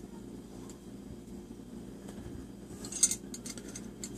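A few light clinks of metal tweezers and a dime on a glass Pyrex baking dish, the loudest a sharp tap about three seconds in, over a low steady hum.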